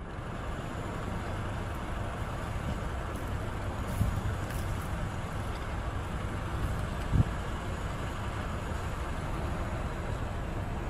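Steady outdoor background rumble and hiss, with two brief knocks about four and seven seconds in.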